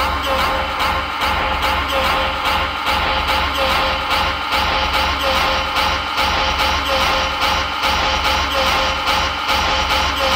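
Industrial techno music: a steady electronic beat under dense, distorted synth layers.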